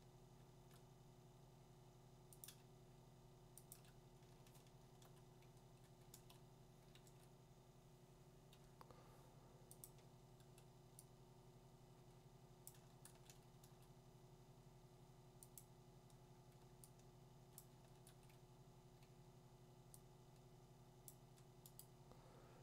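Near silence: a faint steady hum with a scattering of faint, brief computer mouse clicks.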